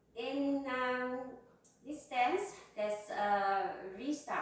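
A woman speaking in short phrases, no other sound standing out.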